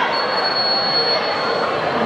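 Referee's whistle blown in one long, steady high blast lasting well over a second, the signal for the server to serve, over the chatter of a gym crowd.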